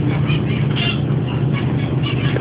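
A steady low mechanical hum, with a faint short higher sound a little under a second in.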